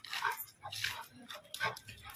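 A dog playing roughly with a person, jumping up and making short breathy noises: three or four brief bursts within two seconds.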